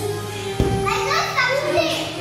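Children's voices calling out over background music, with a single knock a little over half a second in.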